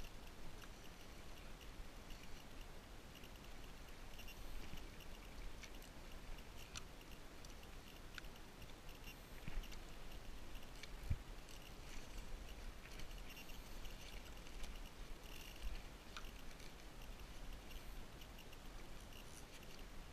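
Water lapping faintly against a kayak hull, with scattered small clicks and ticks over a low rumble.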